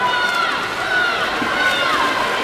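Spectators shouting high-pitched, drawn-out cheers for the swimmers, several in a row, each falling in pitch at its end. Under them is a steady din of splashing water and crowd noise.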